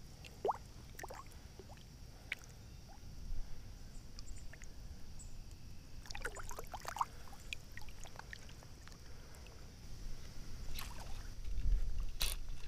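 Soft water sloshing and small splashes as a carp is held in the shallows and released by hand, with a busier patch of splashing about halfway through.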